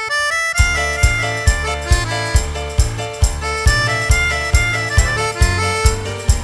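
Live cumbia band playing an instrumental passage between sung verses. After a brief drum break, the full band comes in about half a second in, with a stepping lead melody over bass and a steady beat.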